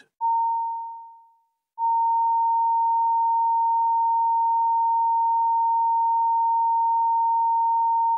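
Broadcast line-up test tone at one pure, steady pitch: a short tone that fades out over about a second, then after a brief gap the tone returns and holds steady for about six seconds.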